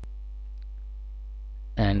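Steady electrical mains hum with a ladder of steady overtones, and a single sharp click at the start.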